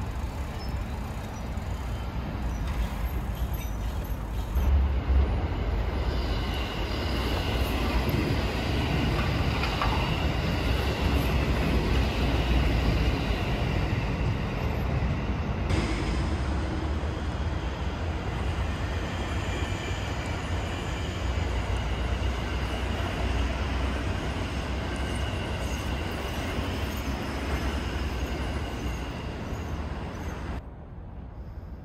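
An electric passenger train running past on the line: a long steady rumble of wheels on rail that builds a few seconds in, with thin high tones ringing over it.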